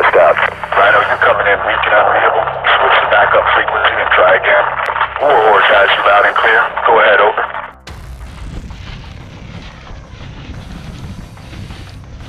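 A voice coming over a two-way radio, thin and narrow-sounding, talking almost without pause for about eight seconds before cutting off abruptly. After that only a much quieter background noise remains.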